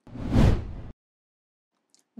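A news-bulletin transition whoosh with a deep low rumble, swelling and dying away within about a second.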